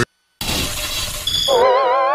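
Edited-in transition sound effect: a brief silence, then a glass-shattering crash, then a warbling synthesized tone that wavers and rises in pitch.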